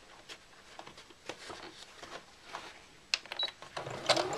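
Sewing machine stopped while two layers of fabric are turned and bent round a curve under the presser foot: soft rustling and scattered light clicks of handling. A few sharper clicks come about three seconds in, just before the machine sews again.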